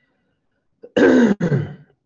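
A person clearing their throat in two short, loud rasps about a second in.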